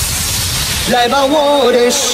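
Club dance-remix music in a breakdown: the kick drum stops, a hiss-like noise sweep runs for about the first second, then a voice begins singing with no beat behind it.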